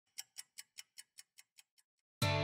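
Ticking sound effect under an animated title card: nine short, sharp ticks, about five a second, each fainter than the last until they die away near the end.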